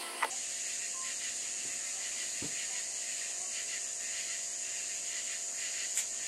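Steady high-pitched hiss with a faint steady hum underneath, starting with a click about a third of a second in. There is one faint knock about two and a half seconds in.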